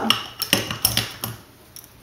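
Makeup brushes with metal ferrules clinking and knocking against each other and the counter as they are put down and picked up: a quick run of small clicks and knocks over the first second and a half.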